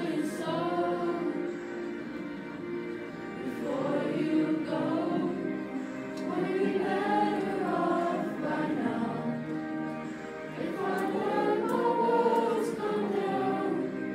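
Children's choir singing together in long, sustained phrases that rise and fall, with short breaks between them.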